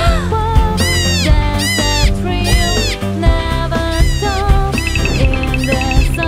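Background music for a children's cartoon with a steady beat, over which a high sliding note falls in pitch again and again, about once a second; near the end, a fast run of high ticks.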